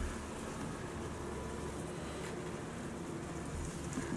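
Steady low background rumble with a faint hiss, with no distinct event.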